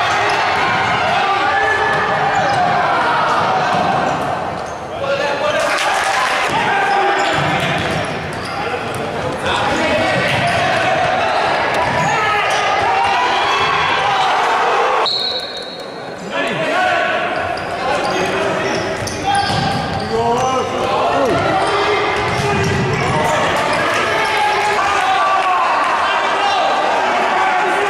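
Futsal ball kicked and bouncing on a wooden sports-hall floor, with players' and spectators' voices echoing in the large hall. A short high whistle sounds about halfway through.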